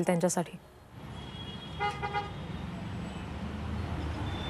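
Low, steady road-traffic rumble with a short vehicle horn toot about two seconds in.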